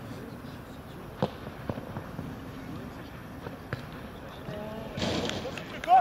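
Football being kicked during a match: a few sharp, separate thuds, the clearest about a second in. Players' short shouts near the end.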